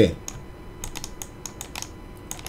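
Light, irregular clicking of computer keys and buttons, about eight soft clicks over two seconds.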